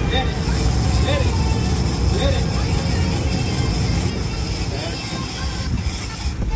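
A boat's engine running underway, a steady low rumble mixed with the rush of the wake and wind.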